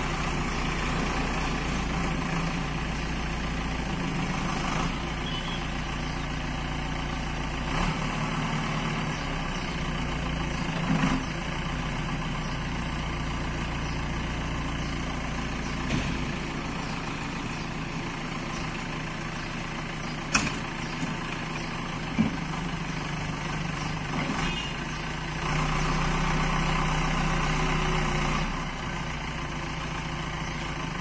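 JCB 3DX backhoe loader's Kirloskar diesel engine running steadily while the backhoe digs, with a few sharp clanks along the way. The engine grows louder for about three seconds near the end.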